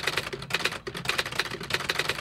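Typewriter keystrokes in a rapid, steady run, about seven or eight keys a second, as a title is typed out letter by letter.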